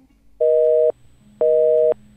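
Telephone busy signal: a steady two-note beep, half a second on and half a second off, sounding twice.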